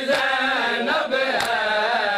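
Male voice chanting a nauha, a Muharram mourning lament, in a held, wavering melody. A sharp slap lands about a second and a half in, one of the regular hand strikes on the chest of matam that keep the chant's beat.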